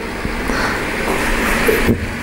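Atlas N scale two-truck Shay geared model locomotive running on the track: a steady whirr of its motor and gears with wheel noise on the rails, growing slightly louder, and a sharp click near the end.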